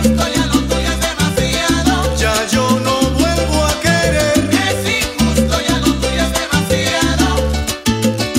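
Salsa band playing an instrumental stretch: a bass line in short repeated notes under congas, timbales and trombones, with no singing.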